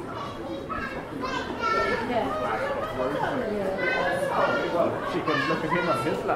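Overlapping chatter of a crowd of passersby, several voices at once, some of them children's, growing louder about two seconds in.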